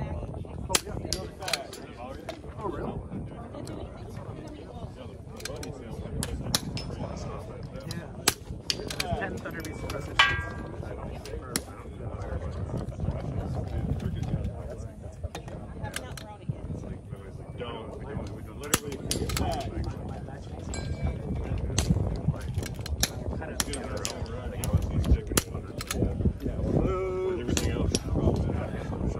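Repeated shots from a bolt-action rimfire rifle, unevenly spaced from about a second to several seconds apart, with smaller clicks in between, over a low steady rumble.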